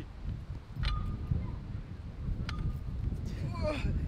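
Wind buffeting the microphone as a steady low rumble, with two short sharp clicks about a second apart, each followed by a brief ring. A man's voice comes in near the end.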